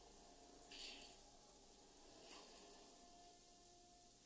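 Near silence: room tone, with two faint, short hisses.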